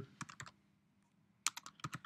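Typing on a computer keyboard: a quick run of keystrokes, a pause of about a second, then another quick run of keystrokes near the end.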